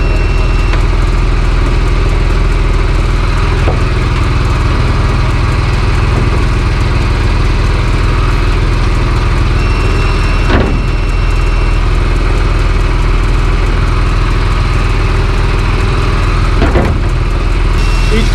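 Deck-mounted, engine-driven dive air compressor running steadily at a constant speed. Three knocks of gear being handled on the boat's deck sound over it, the loudest about ten seconds in.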